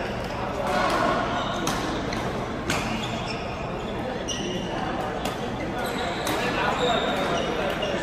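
Busy badminton hall: sharp smacks of rackets hitting shuttlecocks about once a second from the courts, short squeaks of shoes on the court floor, and voices chattering in the hall's echo.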